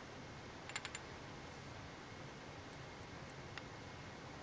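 A few faint, light metal clicks close together about a second in, then a single small tick near the end, as a flat steel valve-depressing tool is set against a valve bucket under the camshaft; otherwise quiet.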